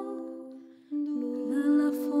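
Song with long, wordless held vocal notes like humming. The held chord fades almost to silence just before a second in, then a new long note begins.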